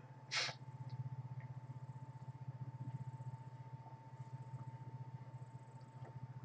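Low background hum that pulses rapidly and evenly, with a faint thin steady tone above it. A short breathy noise comes about half a second in.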